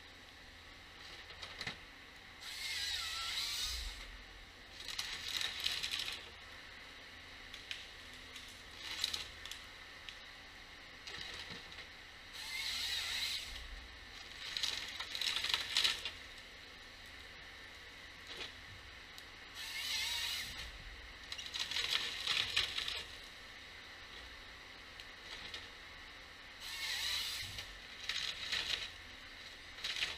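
Timberjack 1470D harvester head processing a spruce stem: repeated bursts of noise a second or two long, about every two to four seconds, as the feed rollers pull the stem through and the delimbing knives strip off its branches.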